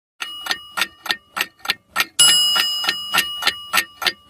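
Alarm-clock sound effect: a clock ticking about three times a second, with a single bell strike about two seconds in that rings on and slowly fades.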